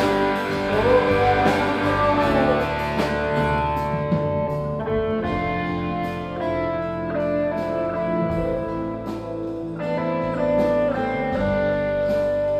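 A live band playing an instrumental passage: an electric guitar plays lead lines with bent notes in the first couple of seconds, over an acoustic guitar.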